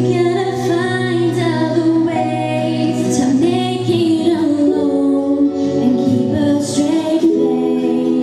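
A woman singing into a handheld microphone, holding long, sustained notes that slide between pitches.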